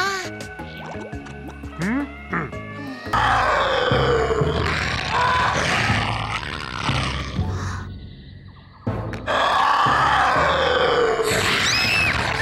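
Background music, then two long, loud cartoon dinosaur roars from a sharptooth. The first starts about three seconds in and lasts some five seconds. The second follows about a second after it ends.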